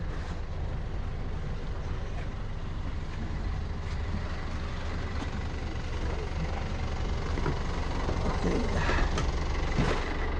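Yanmar 110 hp marine diesel inboard engine idling with a steady low hum, growing a little louder near the end.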